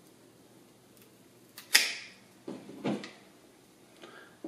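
Hand pruning shears snipping through a woody fig cutting, one sharp snap a little under two seconds in, followed by two softer knocks.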